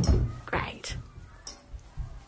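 A thump as a child drops onto a carpeted floor, followed by short breathy, whispered vocal sounds.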